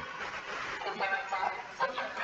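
Faint, indistinct talking coming through a video-call connection.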